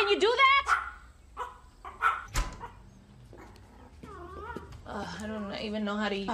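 A dog barking in quick high-pitched yaps at the start, then a few single yips and a sharp click, before a person starts talking about five seconds in.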